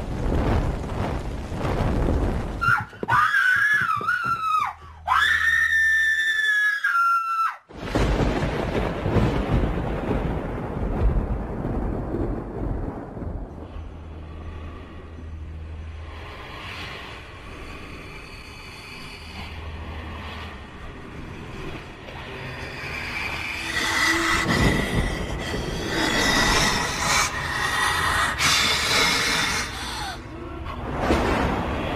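Horror film soundtrack: a noisy rumble, then a high wavering wail from about three seconds in, cut off suddenly near eight seconds by a surge of noise that slowly dies away. Tense score swells up over the last several seconds.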